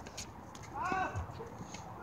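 Tennis rally on a hard court: sharp knocks of the ball on racket and court and low thuds of running steps. About a second in, a player gives a short, loud call.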